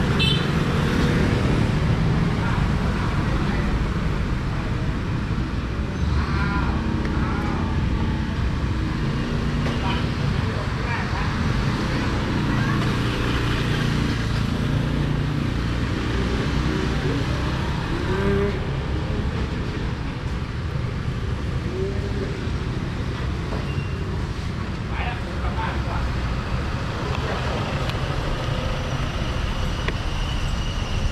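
Honda NC750X motorcycle's parallel-twin engine running at low speed along with street traffic noise, a steady low rumble throughout.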